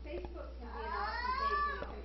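A single high, drawn-out voice-like cry whose pitch rises and then falls over about a second, heard amid talk.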